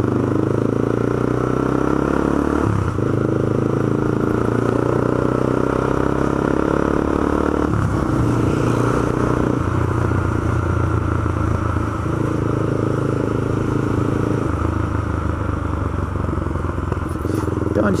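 Honda CB300's single-cylinder engine running under way at low town speed, its note shifting up and down several times as the throttle and gears change.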